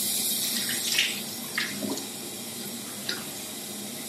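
Tap water running into a bathroom sink while water is splashed onto the face to rinse off facial cleanser, with a few separate splashes. The water gets somewhat quieter about halfway through.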